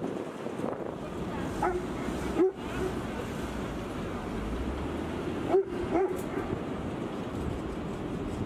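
A dog barking a few times, short separate barks, the loudest about two and a half and five and a half seconds in, over a steady rumble of wind on the microphone.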